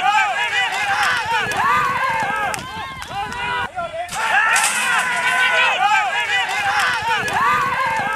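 Several people shouting and yelling excitedly at once as racehorses break from the starting gate, with a few sharp cracks among the voices. The same few seconds of shouting play twice, about six seconds apart.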